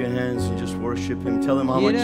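Live worship music: a strummed guitar over held chords, with a voice singing over it.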